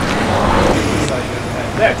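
Road traffic noise from cars on the road, swelling a little in the first second, with a short spoken word near the end.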